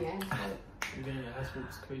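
Quiet talking with two sharp clicks like finger snaps, one right at the start and a louder one a little under a second in.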